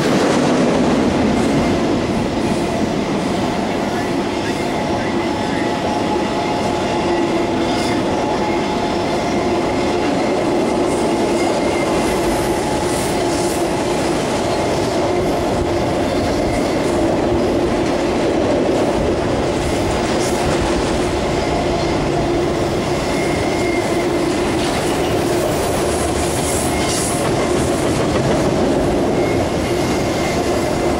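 Freight cars of a passing mixed freight train rolling by: intermodal cars, then autorack cars, with steady wheel-on-rail noise and clickety-clack over the rail joints, and a faint steady whine over it.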